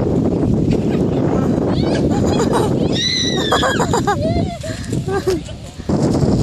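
Wind rumbling on the phone microphone, with a high-pitched child's voice squealing and calling out in falling cries from about two seconds in.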